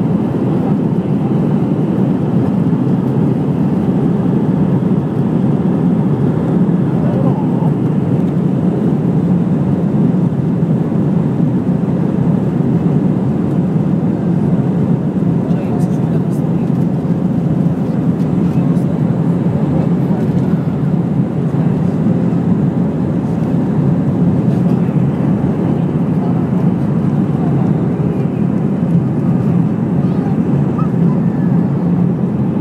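Airbus airliner's jet engines heard from inside the cabin over the wing during the takeoff roll: a loud, steady, low roar that holds level throughout.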